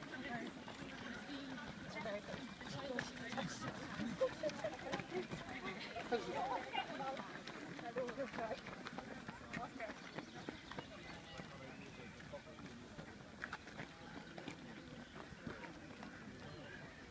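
Many runners' footsteps on a gravel path, with indistinct voices talking in the background, busiest in the first half.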